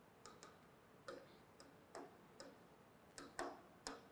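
Near silence broken by a scattering of faint, irregular clicks: a stylus tapping on a pen-display screen.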